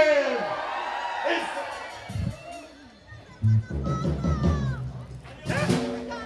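A live band's song ends on a sustained chord that fades out over about a second, leaving crowd noise and scattered voices. Near the end a sudden loud hit from the band signals it starting up again.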